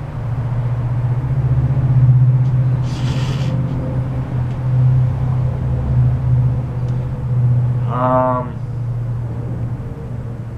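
A steady low rumble swells over the first couple of seconds and then wavers, with a short hiss about three seconds in and a brief hum-like voiced sound near the end.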